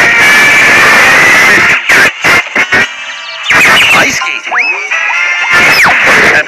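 Loud cartoon soundtrack of music and sound effects, chopped into short bursts with abrupt cuts, with sliding tones rising and falling in the second half.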